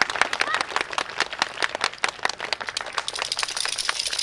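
Audience applauding, a dense patter of irregular claps.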